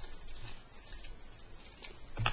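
Faint handling sounds: light rustling of a small clear plastic wrapper and a few small clicks as fingers work a small battery out of it.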